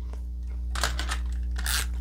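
Paper rustling and light tearing as small die-cut cardstock leaf pieces are handled and pulled apart, a few short scratchy bursts in the second half, over a steady low electrical hum.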